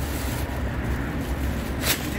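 Steady low rumble of street background noise, with a short hissing rustle near the end.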